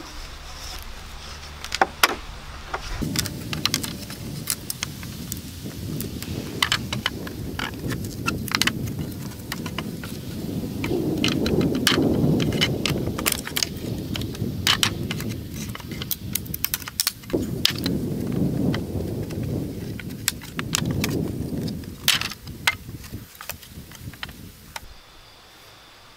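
Boards being pried off a wooden wooden pallet with a wrecking bar: many sharp cracks, knocks and metal clinks. Under them runs a low rumbling noise that swells twice in the middle.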